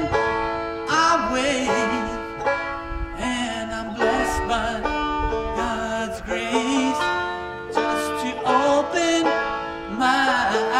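A Deering Boston five-string banjo being picked, a continuous run of ringing plucked notes.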